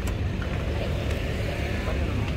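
Steady low rumble of road traffic, with faint voices of people nearby.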